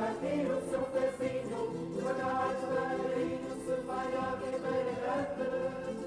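Music with a choir of voices singing long held notes.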